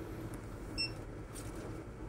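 Quiet shop room tone with a faint steady hum and a single short, high-pitched electronic beep about a second in.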